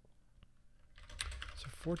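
Computer keyboard typing: a couple of faint key clicks, then a quick run of keystrokes in the second half as Vim commands are entered.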